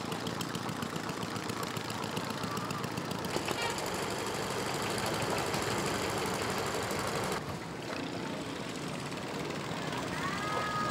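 Small boat engines running with a rapid knocking chug. The sound shifts abruptly about three seconds in and again about seven seconds in.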